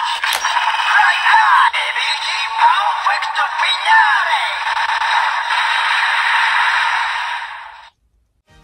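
DX Two Sidriver toy transformation belt with the Perfect Wing Vistamp playing its transformation sound through its small built-in speaker: electronic voice calls over music, thin with no bass. It ends on a steady held sound that fades and cuts off just before the end.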